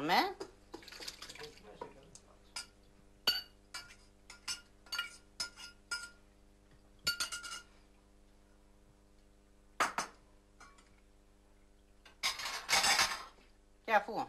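A metal spoon clinking and scraping against a stainless steel saucepan as boiled strawberry-tree fruit is emptied into a cloth strainer over a pot, a series of light clinks and taps, some briefly ringing. About ten seconds in comes a single knock, and near the end a short burst of rustling as the straining cloth is handled.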